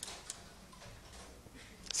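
Two faint clicks about a third of a second apart as the projected slide is changed, over quiet room tone.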